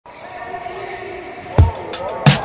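A basketball bounces once on a hardwood floor, a single deep thud about one and a half seconds in, over a swelling bed of intro music.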